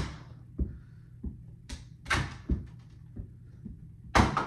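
Small red balls striking a plastic toddler basketball hoop and bouncing on the floor: a string of separate thuds and sharper knocks, about eight in all, the loudest right at the start.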